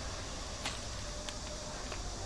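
Faint handling noises from a digital caliper being slid and closed on small chocolate balls: one light click under a second in and two fainter ticks later, over steady room hiss and a low hum.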